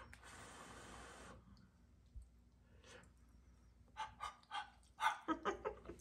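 A man blowing on a forkful of hot, cheesy au gratin potatoes to cool it: a soft, steady breathy hiss for about a second and a half. Near the end come a few short, soft mouth and fork sounds as he takes the bite.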